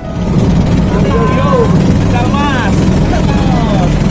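A wooden passenger boat's engine running loudly and steadily under way, with people's voices heard over it.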